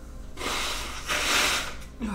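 A man blowing his nose hard into a tissue, two blows, the second louder, his nose running from the burn of super-hot peppers.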